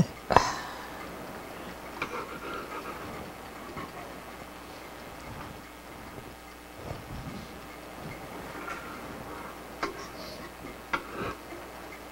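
A short laugh, then quiet kitchen handling sounds as dough is worked on a countertop, with a few light taps, the clearest near the end.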